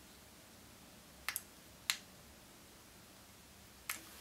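A few small, sharp clicks of fly-tying tools being handled over faint room tone: a quick double click about a second in, another just after, and one near the end.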